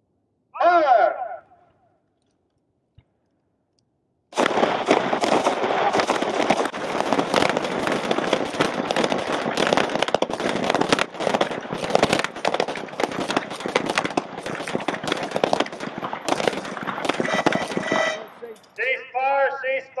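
9 mm pistols firing in rapid, overlapping shots from several shooters at once. The dense string of shots starts about four seconds in and goes on for about fourteen seconds.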